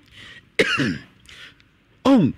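A person coughing and clearing their throat: a breathy rasp, a short voiced grunt with falling pitch about half a second in, then another rasp.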